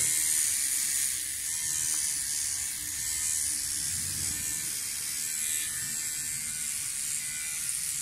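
MicroTouch Solo cordless trimmer running steadily as it is worked over a beard, a high-pitched whir. It is failing to take the hairs.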